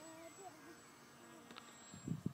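Faint, wavering buzz of a radio-controlled flying wing's motor and propeller in the air at a distance, its pitch rising and falling with the throttle.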